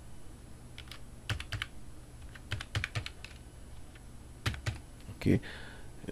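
Computer keyboard typing: keys tapped in a few short runs with pauses between, as an IP address is entered.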